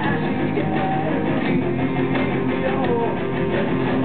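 Rock band playing live, with guitars strumming to the fore, heard from among the audience.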